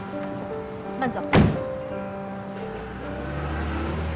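Background score with a car door slamming shut once, sharply, about a second and a half in, followed near the end by the low rumble of the car pulling away.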